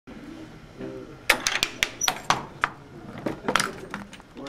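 A quick, uneven run of sharp wooden knocks and clicks, about ten over two seconds, from the parts of a wooden chain-reaction contraption, with faint voices in the background.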